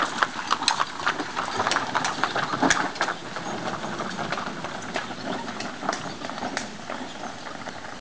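Horse-drawn cart on the move: irregular clopping of hooves and knocks from the cart, growing gradually fainter.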